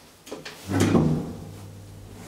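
A small click or two, then a loud clunk about three-quarters of a second in as a 1991 KONE hydraulic elevator starts off after its floor button is pressed. A steady low hum from the elevator's machinery follows the clunk and keeps going.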